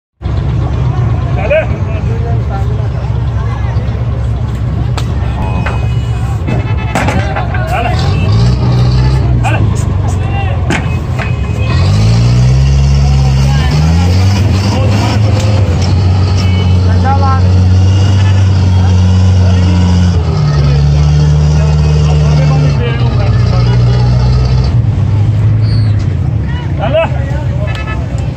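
A vehicle engine running close by, its pitch rising about twelve seconds in, holding steady, then shifting up and down several times near the end. Men's voices call out over it, with scattered knocks in the first half.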